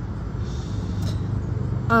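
Steady low rumble of road traffic in the background, with her voice starting up again just before the end.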